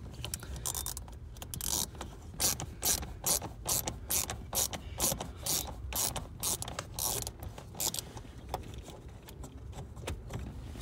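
Hand socket ratchet clicking in irregular quick runs of strokes as it backs out the 8 mm screws holding a blower motor resistor.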